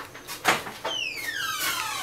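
A swoosh sound effect: a short burst of noise, then a falling swoop that slides down in pitch over about a second.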